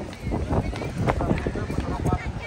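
Voices with irregular thumping footsteps of someone running.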